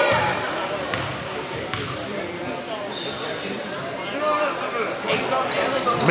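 Gym crowd chatter at a basketball game, with the ball bouncing on the hardwood court, a few sharp knocks and some brief high sneaker squeaks as play resumes after a free throw.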